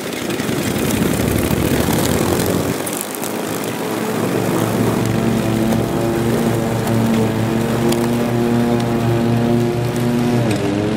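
Riding lawn tractor's small engine running steadily as it drives slowly across the garden soil, with a dip about three seconds in before the engine note settles into an even hum.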